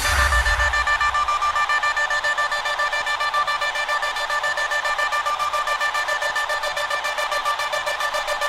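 Bounce-style electronic dance music from a DJ mix: a low boom fades out in the first second, then a sustained high synth chord pulses quickly and steadily with no kick drum or bass under it.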